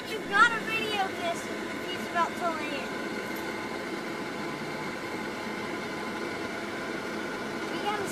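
Steady engine hum with no clear rhythm, under brief high-pitched voices in the first few seconds.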